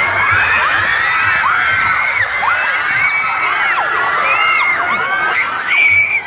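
Large crowd of young people screaming and cheering, many high-pitched shrieks overlapping without a break.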